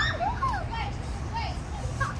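Children shrieking and shouting while they play on a playground spinner, with a loud rising squeal right at the start, over a steady low background rumble.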